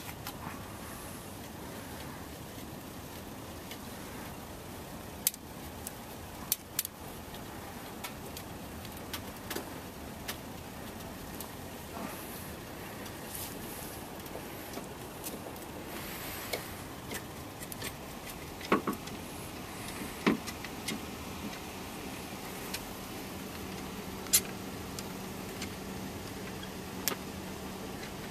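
Car jack being cranked down by hand: scattered metallic clicks and knocks from the jack handle over a steady background noise, the sharpest knocks a little past halfway.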